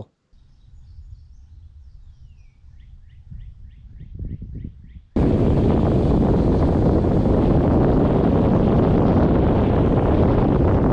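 A faint low hum with a bird chirping in a quick series, about four chirps a second. About halfway through it cuts suddenly to loud, steady wind buffeting the microphone in an open field.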